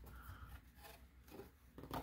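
Faint rustling and scraping of an Elite Trainer Box's cardboard and paper contents being handled by hand, with a few soft rubs.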